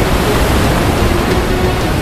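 Loud, steady rush of sea surf breaking on a shore, with soft background music holding a few sustained notes beneath it.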